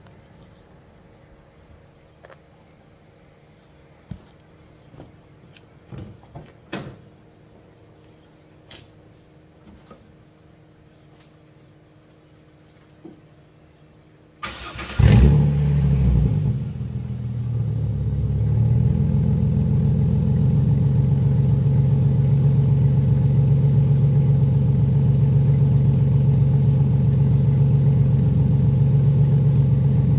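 A few faint clicks, then about halfway through a Ford Mustang's engine is warm-started: a short crank, a quick flare of revs, and it settles into a steady idle. The exhaust is nearly straight-piped, with no resonator and an 8-inch Cherry Bomb glasspack just ahead of the tip.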